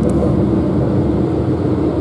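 Running noise inside a Renfe series 450 double-deck electric commuter train: a steady low rumble as the train travels along the track.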